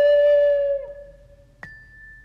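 Instrumental hymn melody in a soft, flute-like tone: a single held note that bends down in pitch and dies away just under a second in, leaving a pause with one sharp click about a second and a half in.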